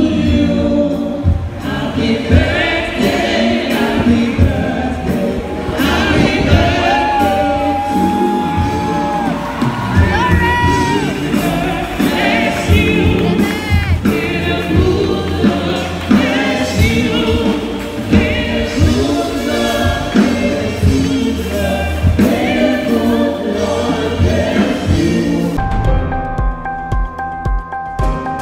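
Gospel music with a choir singing over a band, a lead voice holding long notes about a third of the way in.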